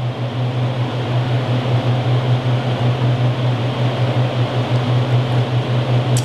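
Steady low mechanical hum under an even rushing noise, unchanging throughout.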